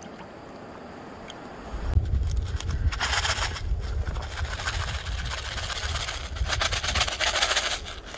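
Dry shredded hash browns poured from a carton into a pan of water, a rustling patter that comes in two spells, from about three seconds in and again near the end. A low rumble starts about two seconds in and runs underneath.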